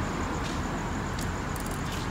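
Steady low rumble of street traffic and idling vehicles, with a few faint clicks.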